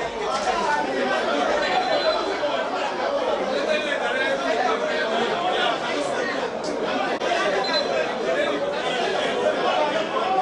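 Indistinct chatter of several voices talking at once, steady throughout.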